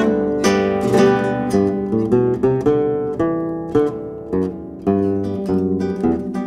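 Instrumental interlude of a song: acoustic guitar playing a run of plucked notes and strummed chords over a bass line.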